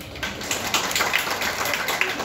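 A roomful of people applauding: a dense patter of many hands clapping together, dying away near the end.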